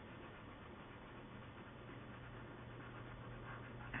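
Faint, steady rubbing hiss of a colored pencil shading softly on paper, over a constant low electrical hum.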